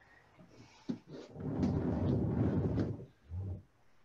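An inflated exercise ball rubbing and scraping under a person's weight as they sit on it and roll back over it. First a click, then about a second and a half of rough rubbing, then a brief low sound near the end.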